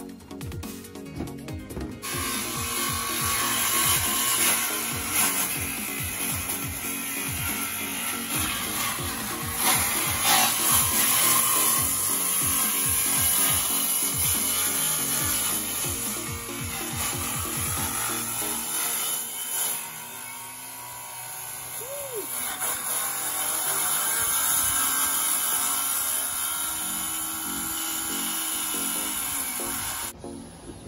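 Corded power saw cutting into a boat's deck, a continuous high buzzing that starts about two seconds in and eases off briefly a little after the middle. Background music with a steady beat plays underneath.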